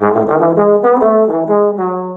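Bass trombone with independent F and G-flat valves playing a quick run of short notes in a bebop line, ending on a held note. The C-sharp is taken in fifth position, its primary slide position, so the run needs a lot of slide motion.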